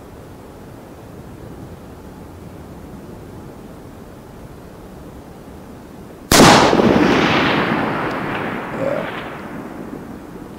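A single rifle shot from a custom .308 Winchester, a sharp crack about six seconds in followed by a long rolling echo that fades away over about three seconds.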